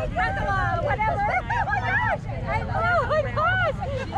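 Indistinct chatter of several people talking at once, over a steady low rumble.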